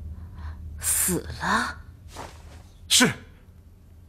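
A person's voice making short sounds without words: a breathy burst about a second in, brief falling voiced sounds, and a sharp exclamation that falls steeply in pitch about three seconds in.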